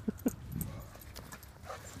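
Dogs at play: a couple of short, sharp dog sounds near the start, then only faint scattered clicks.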